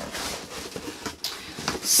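Rustling and a few light knocks of a large cardboard subscription box being handled and lifted.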